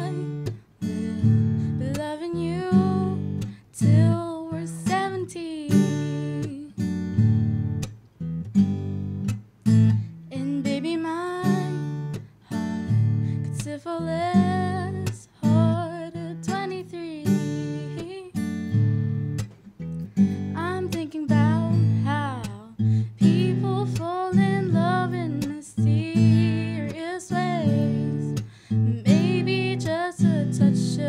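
A girl singing a song to acoustic guitar accompaniment, the guitar playing steady chords under her voice.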